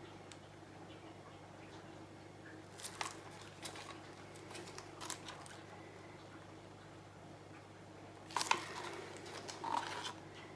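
A few faint clicks and light taps of small objects being handled, the loudest near the end, over a steady low hum.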